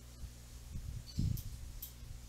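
Quiet room with a steady low hum, a soft low bump a little over a second in, and a couple of faint short clicks.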